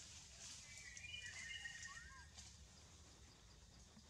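Near silence: faint outdoor ambience with a steady high hiss and a few thin, high whistled calls around one to two seconds in.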